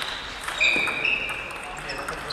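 Table tennis ball clicking off bat and table in a rally, a couple of sharp ticks about half a second in. A loud, steady high-pitched squeak starts just after and runs through most of the rest, over voices from the busy hall.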